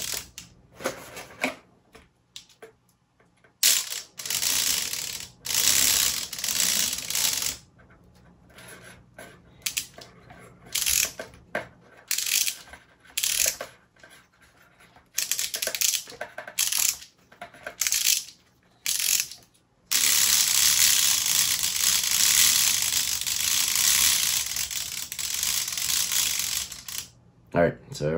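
Wooden gear mechanism of a UGears Windstorm Dragon model kit running after being wound up, a loud rattling, ratchet-like clatter of wooden gears. It goes in short spurts of a second or two at first, then runs without stopping for about seven seconds near the end. The mechanism is working as intended.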